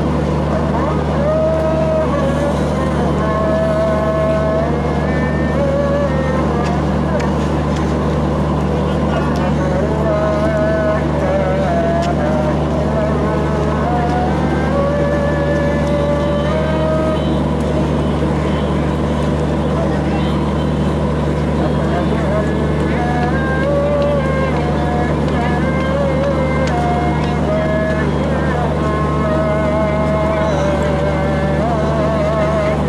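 Steady low diesel hum from a standing train, with the babble and calls of a large crowd over it.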